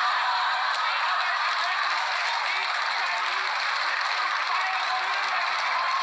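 Studio audience laughing and applauding in a steady, sustained wave.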